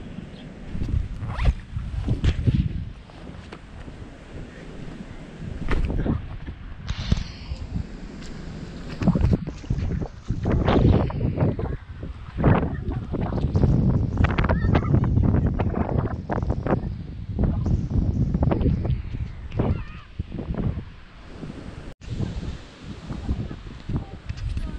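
Wind buffeting a GoPro's microphone in a storm, a loud uneven rumble that rises and falls in gusts, with scattered short knocks and splashes of steps through shallow floodwater.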